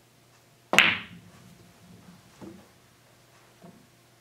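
Pool shot: a single sharp click as the cue ball, struck by the cue, hits a frozen two-ball combination, then the balls rolling on the cloth, with a duller knock about two and a half seconds in and a faint tap near the end.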